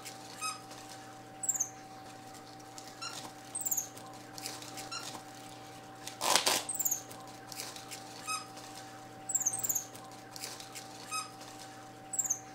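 Pet capuchin monkeys giving short, high-pitched squeaks and chirps every second or two over a faint steady hum. A brief rustle about six seconds in is the loudest sound.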